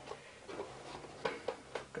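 Faint taps and light clicks of thin cardboard panels being handled and pressed together as a slotted cardboard box is assembled by hand, a few scattered through the two seconds.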